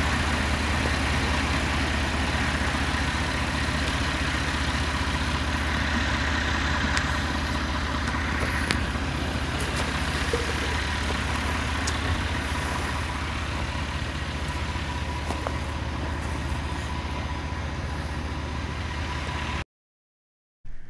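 An engine running steadily, a low hum under a steady hiss, with a few faint clicks; it cuts off abruptly just before the end.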